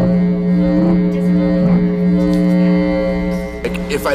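A sustained musical drone on one low note, rich in overtones and held steady with only slight wavers, breaking off shortly before the end.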